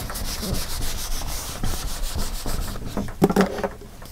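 Handheld eraser scrubbed back and forth across a whiteboard, wiping off marker drawing: a dry, steady rubbing that dies away near the end.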